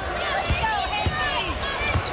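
A basketball being dribbled on a hardwood court: three low bounces, unevenly spaced, over a background of voices.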